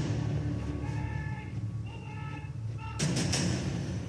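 Film trailer soundtrack: music with held higher tones over a steady low rumble, broken by a heavy boom about three seconds in.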